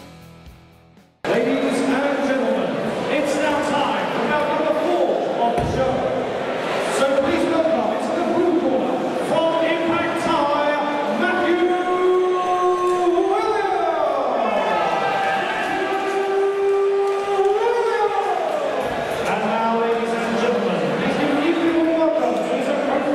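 A ring announcer's voice over a hand-held microphone and PA in a large hall, drawing his words out in long tones that rise and fall. It starts suddenly about a second in.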